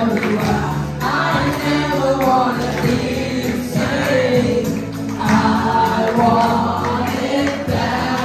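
A song sung into a handheld microphone over instrumental backing, amplified, the melody moving continuously with no pauses.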